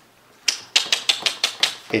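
A quick run of about eight sharp clicks or taps, starting about half a second in and lasting about a second and a half.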